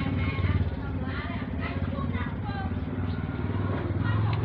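A small motor running steadily with a low buzz, with voices over it.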